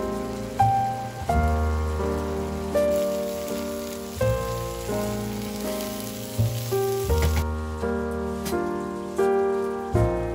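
Soft piano music with a steady hiss of lentils and vegetables sizzling in a frying pan; the hiss stops about seven seconds in.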